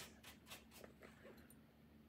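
Near silence: room tone, with a few faint, brief sounds in the first second or so.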